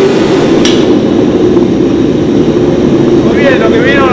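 Propane forge burner running with a steady, loud roar. A single sharp knock comes about two-thirds of a second in, and a man's voice starts near the end.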